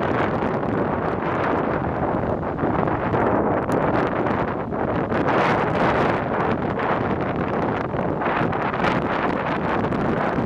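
Strong wind buffeting the microphone: a dense, steady rumble that rises and falls slightly with the gusts.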